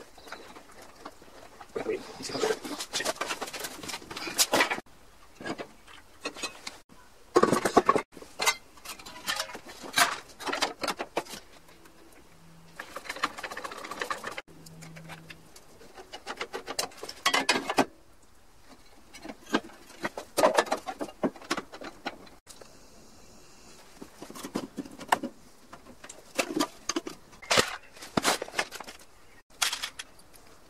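Clanks, knocks and scrapes of hand tools and metal engine parts being handled, in short bursts with quieter gaps between.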